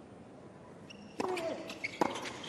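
Tennis serve on a hard court: a little past halfway the ball is struck with a short grunt from the server, followed by two or three sharp racket hits in a quick rally over a low crowd murmur.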